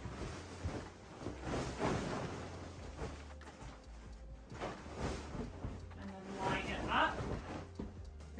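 Bedding fabric rustling and swishing in several separate sweeps as a duvet cover is pulled over a duvet and spread across the bed.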